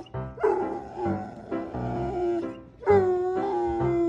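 A dog whining in long, wavering, held notes that bend up and down, mixed with background music.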